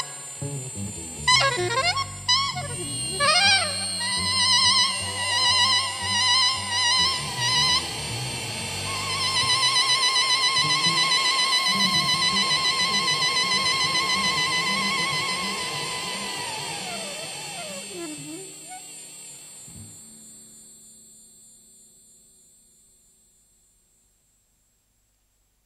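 Jazz saxophone playing a quick run of notes, then a long high note with vibrato that slides down, over low bass notes. The music then fades away to silence near the end.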